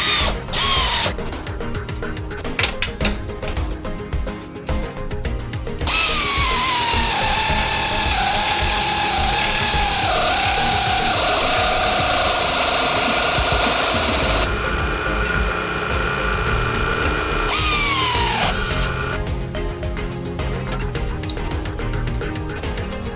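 A power drill running in three goes, a short one at the start, a long one of about eight seconds in the middle and a short one near the end, its whine falling in pitch as it comes under load. Background music with a beat plays under it.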